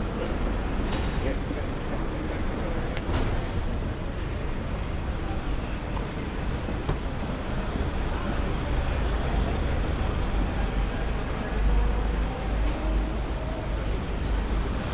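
City street ambience: a steady wash of road traffic with passers-by talking close by. A deeper low rumble swells briefly about twelve seconds in.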